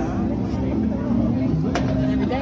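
A steady low drone with background voices over it, and a single sharp click near the end.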